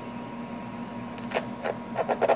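Steady low electrical hum with a faint, thin high tone over it, from a radio test bench; a few short sharp sounds come in near the end.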